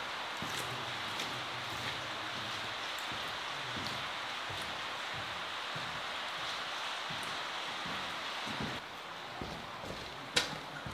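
Steady rushing hiss of rainwater running along a drainage tunnel, with a few faint footfalls on the wet floor. The hiss drops away abruptly near the end.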